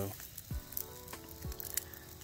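Food sizzling on a grill grate over glowing wood-fire coals, with scattered small crackles. Faint background music with steady held notes and a low beat runs underneath.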